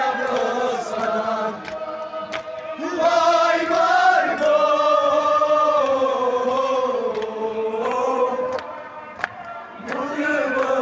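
Men chanting a Kashmiri noha, a Muharram lament, led through a handheld microphone, with long held notes that slide slowly in pitch. The chant grows louder about three seconds in.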